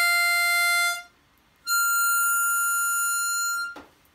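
C diatonic harmonica playing two steady, unbent draw notes an octave apart: the F on hole 5 draw ends about a second in, and after a short gap the higher F on hole 9 draw is held for about two seconds. These are the same note F as the full-tone bend on hole 2 draw, sounded on unbent holes.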